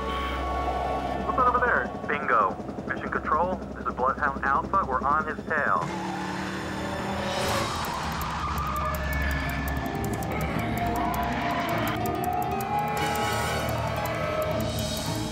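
A man's loud, strained cries for about four seconds, then film score over a car driving past at speed, with a rising rush of tyre and wind noise as it passes about seven seconds in.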